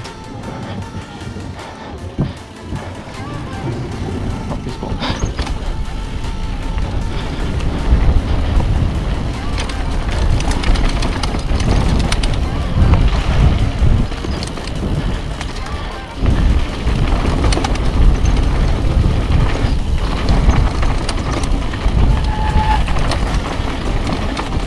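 Mountain bike descending a dirt trail: tyre noise and frame rattle over the ground, with wind buffeting the camera microphone as a deep rumble that grows louder as speed builds. A few knocks come as the tyres cross a wooden boardwalk at the start.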